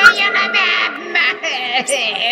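Music with high-pitched, electronically altered voices warbling and babbling without clear words.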